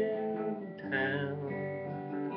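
Acoustic guitar strummed, its chords ringing on, with a fresh strum about a second in.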